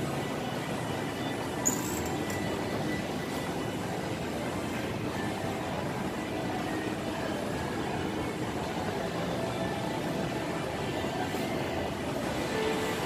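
Steady mechanical hum and hiss of a moving escalator and the shopping-mall ambience around it, with a single sharp click about two seconds in.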